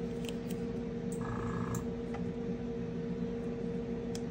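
A steady low electrical hum from equipment in the room, with a brief higher buzz about a second in and a few faint ticks of hands handling the masking tape.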